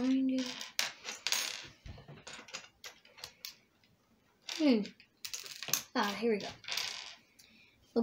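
Small plastic building-set pieces clicking and clattering against each other and a wooden tabletop as a pile is sorted through by hand, a run of short sharp clicks. A child's voice is briefly heard too: a short hum at the start and a few vocal sounds around the middle.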